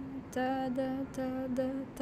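A woman's voice chanting strumming-rhythm syllables, 'ta, da', on one steady pitch: about six short, evenly timed notes.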